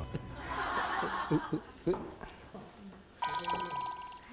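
Soft laughter and chuckling, then near the end a short electronic ringing trill like a telephone bell, lasting under a second: an edited-in sound effect.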